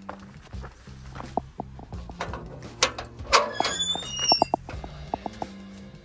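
Background music with a steady bass line. About halfway through, a few clunks and a loud metal squeal as the steel door of a bear-proof food storage box is unlatched and swung open.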